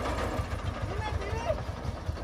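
Công nông farm truck's single-cylinder diesel engine idling with a steady low chugging.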